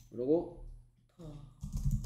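Typing on a computer keyboard, a few keystrokes, with short wordless vocal sounds from a person, the loudest just after the start.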